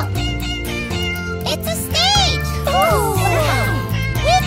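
Children's song instrumental music with cartoon cat meows sliding up and down in pitch over it, several times, the longest about halfway through.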